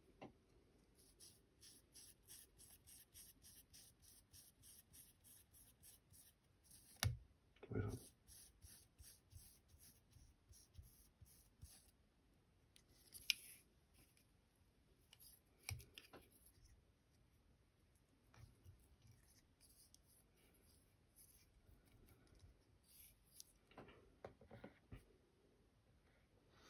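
Faint scratchy rustle of tying thread and dubbing being wound around a fly hook in a vise, in quick regular strokes, with a few soft knocks along the way.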